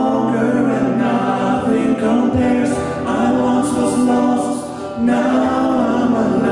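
Male voices singing a worship song in close harmony over keyboard accompaniment. They hold long notes, with a short break and a new phrase about five seconds in.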